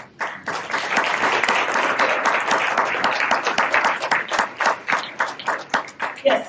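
Audience applauding, starting right away and thinning into scattered separate claps toward the end.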